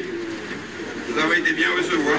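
Indistinct voices of several people talking in the room, with no clear words, louder in the second half.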